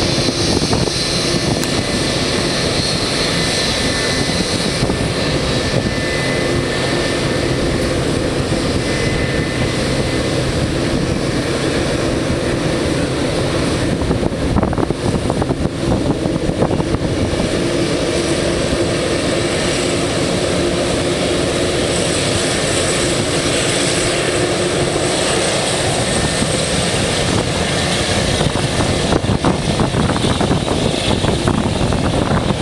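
Boeing 787-9 Dreamliner's jet engines running at taxi power as the airliner rolls past, a loud steady rush with a faint whine.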